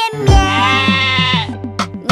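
A long, wavering sheep-like "baa" bleat voiced as part of a children's song, over a bouncy backing with a drum hit just before it; short descending plucked notes follow near the end.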